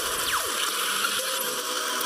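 Soundtrack of a lightning-storm intro effect clip playing back: a steady hissing noise with a falling whoosh-like sweep in the first half second and a brief rising sweep near the end.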